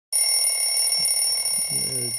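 An electronic alarm tone sounding steadily in several high pitches, starting abruptly. A low voice begins near the end.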